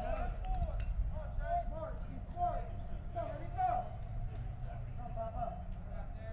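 Faint, indistinct voices over a low, steady rumble, picked up by the broadcast booth microphones.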